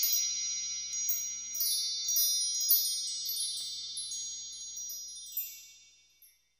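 Chime sound effect for an animated intro: a shimmering cluster of high ringing tones sprinkled with light tinkling strikes, slowly dying away to silence near the end.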